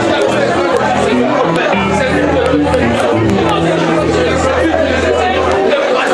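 Live church band music, with long held bass notes changing pitch every second or two and drums, and a man's voice over the PA on top.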